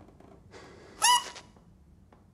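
A single short, high-pitched squeak about a second in, led in by a breathy rush of noise.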